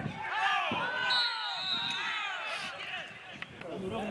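Several voices shouting and calling at once across a football pitch, with a brief, steady high whistle about a second in.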